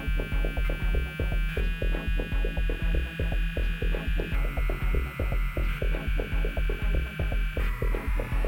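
Electronic music: a steady, fast drum-machine beat under a sustained Arturia Pigments wavetable synth tone. The tone shifts in timbre in several sudden steps as its wavetable settings (unison detune, FM amount) are adjusted.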